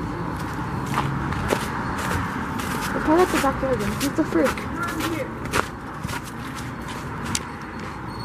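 Handheld camera carried by someone walking: footsteps and handling knocks over a steady rushing noise, with brief faint voices in the middle.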